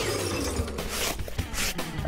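A shattering sound effect, like breaking glass, trailing off over background music.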